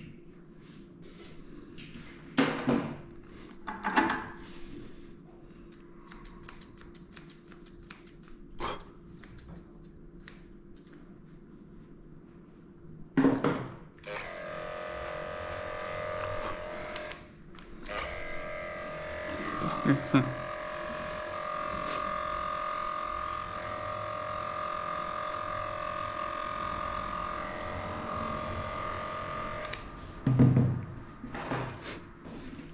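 Electric dog grooming clippers switched on about halfway through and running with a steady hum as they cut the coat, briefly cutting out once soon after starting. A few short, louder sounds come before them.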